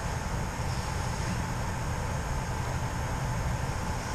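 Steady background noise: an even hiss with a low rumble underneath, with no distinct events.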